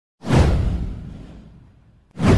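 A single swoosh sound effect from an animated channel intro, with a deep low rumble under it: it starts suddenly, peaks almost at once and fades away over about a second and a half.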